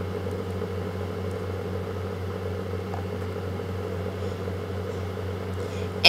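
Steady low hum with a faint hiss under it, the recording's background noise, holding constant with no speech.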